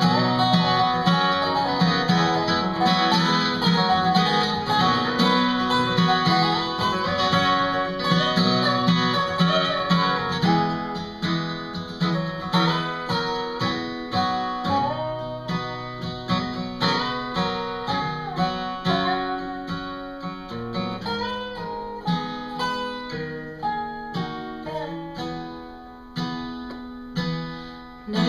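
Acoustic guitar strumming under a resonator guitar (dobro) played lap-style with a slide in an instrumental break, its notes gliding between pitches. The playing gets quieter through the second half.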